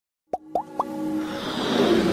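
Logo-intro sound effects: three quick plops, each rising in pitch, in the first second, followed by a swelling whoosh that builds toward the end.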